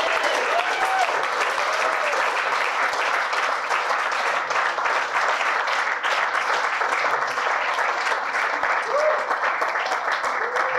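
Audience applauding steadily, with a few voices calling out near the start and again near the end.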